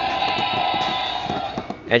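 Mattel Jurassic World Roaring Super Colossal Tyrannosaurus Rex toy playing its electronic roar through its small built-in speaker, set off by opening the jaw. A steady, buzzy sound that fades out near the end.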